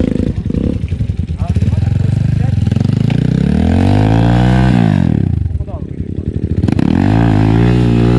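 Kayo dirt bike's single-cylinder engine revved hard twice, its pitch rising then dropping each time, as the rider throttles the rear wheel loose to spin in the dirt and swing the bike round in an elephant turn.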